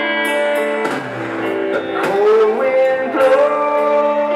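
Live blues-rock band playing: electric guitar holding sustained notes, with a rising string bend about two seconds in, over bass guitar and drums with cymbal hits.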